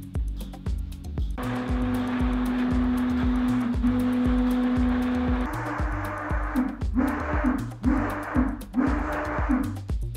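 NEMA 23 stepper motor spinning a large 3D-printed tank turret through its gear drive. It runs at one steady pitch from about a second and a half in, and from about 7 s it comes in about four short bursts as the turret starts and stops. Background music with a steady beat plays underneath.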